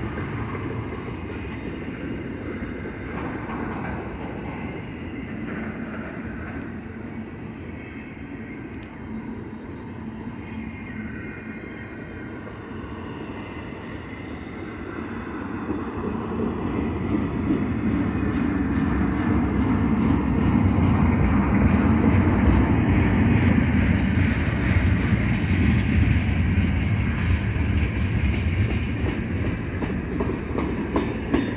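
Freight train cars rolling past: double-stack container well cars, then covered hoppers. Their steel wheels make a steady rumble on the rail, which grows louder about halfway through, with rapid clicking of wheels over the rail joints.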